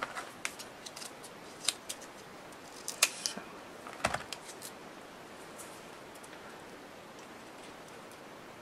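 Hand scissors snipping off excess paper: several short, sharp snips over the first five seconds.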